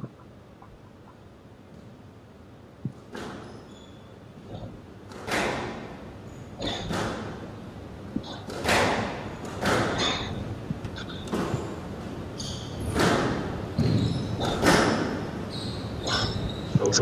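Squash rally: the ball cracks off rackets and walls about every second, each hit ringing briefly in the hall, with short squeaks of court shoes between hits. The first few seconds are quiet before the hitting starts.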